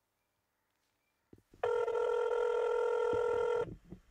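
Ringback tone of an outgoing mobile phone call: one steady ring about two seconds long, starting about a second and a half in, with faint clicks just before it.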